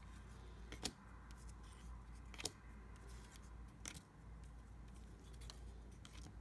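Stack of paper baseball cards flipped through by hand: three crisp clicks of card edges snapping as single cards are slid off the stack, about a second and a half apart, with a weaker one near the end, over a faint low hum.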